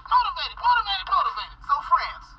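Speech played through a small laptop speaker: continuous talking that sounds thin and tinny, like a voice over a phone, with no bass.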